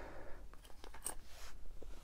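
Faint handling noises from small aluminium AN hose fittings and their plastic bags: a soft rustle, then a few light clicks as the parts are set down and picked up.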